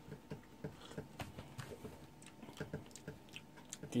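Faint mouth sounds of someone tasting a milkshake: small wet clicks, smacks and swallows, several a second, coming irregularly.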